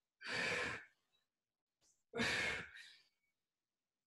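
Two forceful exhalations by a woman working through a core exercise, each about half a second long, the first just after the start and the second about two seconds later.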